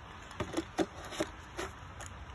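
Plastic filter cartridge of a mosquito trap being twisted on its housing by hand, giving about five light clicks.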